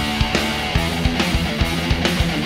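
Recorded rock song playing without vocals: distorted electric guitar over a fast, driving drum beat.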